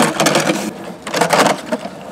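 Skateboard wheels rolling and rattling over rough concrete, swelling twice.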